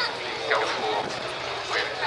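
Indistinct voices talking, the loudest sound, over a faint steady low hum.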